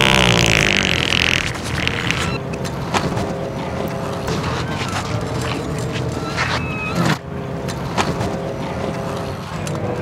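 A loud, wet fart noise, buzzy and falling in pitch, lasting about a second and a half at the start, from the old man's prank.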